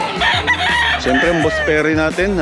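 Gamefowl roosters crowing, several calls overlapping, with one loud crow in the second half.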